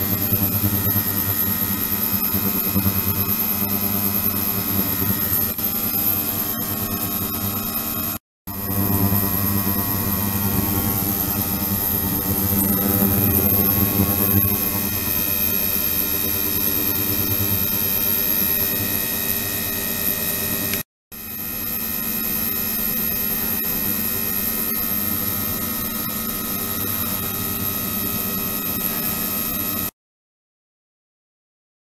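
Immersible ultrasonic transducer running in a water-filled plastic container: a steady hum and hiss with many constant tones and a high whine over them. The sound drops out for a moment twice, about eight seconds in and again about twenty-one seconds in.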